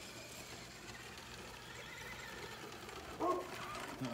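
Faint whine of a Traxxas Slash 2WD electric RC truck's motor as it drives over dry grass, rising and then falling in pitch; its battery is running low.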